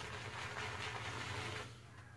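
Soft rustling of something being handled, fading out about a second and a half in, over a low steady hum.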